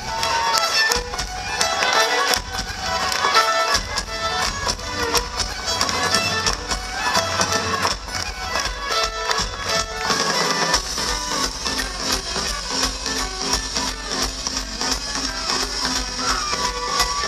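Live Irish folk-punk band playing a fast tune: fiddle carrying the melody over steady, quick drum beats.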